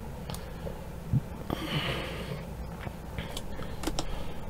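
Quiet room tone with a low hum, a short breathy sniff or exhale from the person at the desk about one and a half seconds in, and a few faint clicks.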